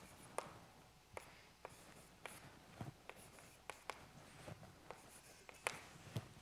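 Chalk on a blackboard while a formula is written: a faint, irregular string of short sharp taps with light scraping between them.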